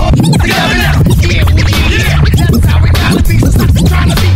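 Hip hop DJ mix with turntable scratching: quick back-and-forth record scratches sweep up and down in pitch over a steady heavy bass beat.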